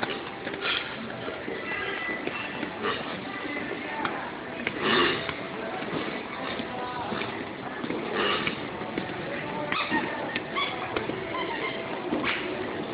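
Supermarket ambience: background music with indistinct voices.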